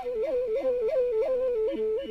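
Soundtrack music: a solo flute playing a quick, ornamented melody of short notes stepping up and down.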